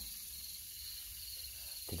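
Faint, steady high-pitched chorus of insects chirring in the background, with a low rumble underneath.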